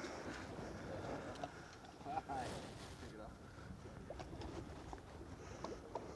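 Low background noise, with a brief faint voice about two seconds in and a few light ticks.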